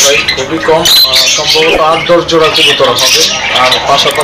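Caged birds squawking and chirping under a man's speech.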